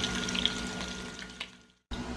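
Pork rib pieces frying as they brown in a pot: a steady sizzle that fades out to silence near the end.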